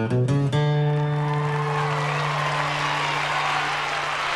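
A live band ends a song: a few quick chord hits on acoustic guitar, bass and drums, then a final chord held and left to ring out. Audience applause rises beneath the fading chord.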